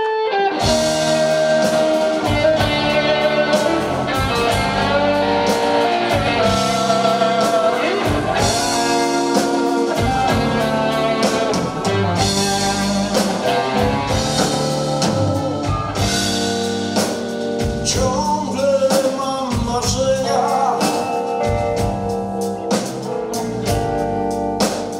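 Blues-rock band playing live on electric guitar, keyboard and drum kit, starting about half a second in.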